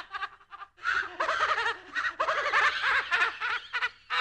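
Spooky horror-style laugh sound effect: after a brief pause, a voice laughs in a run of short bursts until just before the end.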